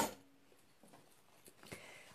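Mostly near silence, then faint rustling and a soft tap in the last half second as quilted fabric pieces of a backpack are handled.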